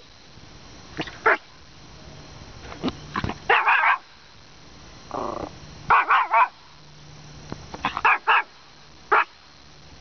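A small Maltese dog barking at a fuzzy caterpillar on the ground: repeated short, sharp barks in quick bursts of two or three, with one longer, lower note midway.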